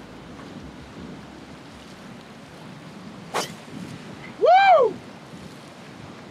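A golf driver striking a ball off the tee: one sharp crack a little past halfway through. About a second later a person lets out a short loud shout that rises and falls in pitch, over a steady hiss of wind.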